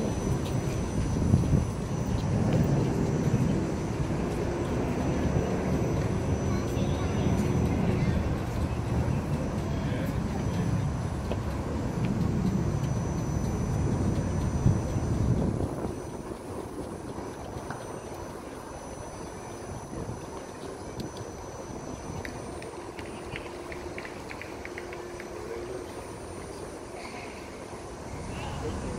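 A low, dense rumble of outdoor background noise. It drops suddenly about fifteen seconds in, leaving a quieter ambience with a few faint ticks.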